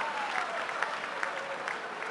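A large audience applauding: a steady wash of many hands clapping that eases slightly toward the end.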